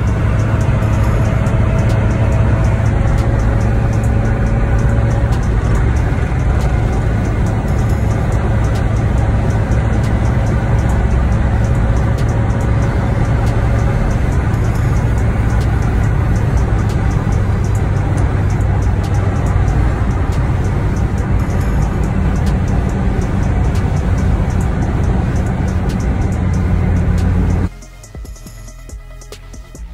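Car cabin while cruising on a highway: a steady low engine and road drone with music playing over it.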